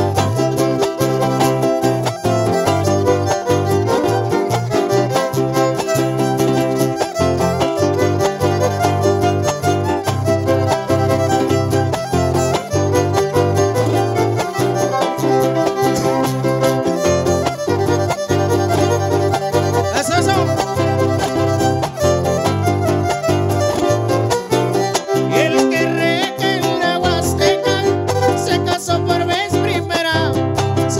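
Huasteco trio playing a huapango: a violin leads over the fast rhythmic strumming of a small jarana huasteca and a larger guitar.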